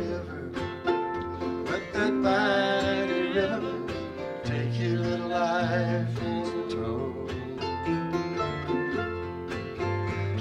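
Acoustic guitar and F-style mandolin playing an instrumental passage between verses of a slow country-folk song, with steady plucked strings and sustained, wavering melody notes.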